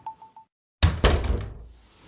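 A quickly repeated high note fades out, then after a brief silence comes one sudden deep impact hit that dies away over about a second: an edited-in transition sound effect.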